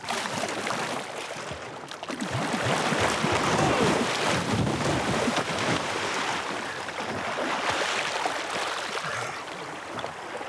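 Water splashing and churning as an inflatable kayak is thrown about and upset in shallow sea water. The splashing builds about two seconds in, is loudest through the middle, and eases off near the end.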